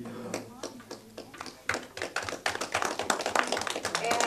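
The last chord of a twelve-string acoustic guitar dies away, then a small audience applauds, the clapping building about a second and a half in.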